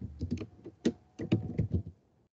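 Typing on a computer keyboard: a run of quick keystrokes with a short pause about halfway through.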